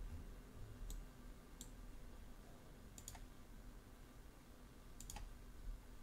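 Computer mouse clicking: four short, sharp clicks at uneven intervals, over a faint low hum.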